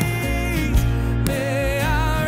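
Live worship song: two men singing together, with acoustic guitar and band accompaniment over a steady low beat.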